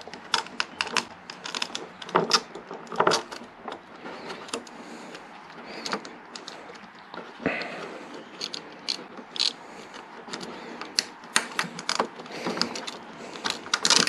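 Irregular small clicks and rattles of bolts being pushed through an accessory bracket and its spacers by hand, with a sharper knock about seven and a half seconds in.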